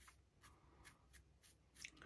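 Faint strokes of a stiff paintbrush dabbed against a 3D-printed model base, a few short brushing strokes a second, as paint is stippled on to build up highlights.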